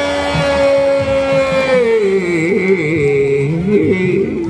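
A man singing one long high note, held for nearly two seconds, then sliding down into a wavering, ornamented tune.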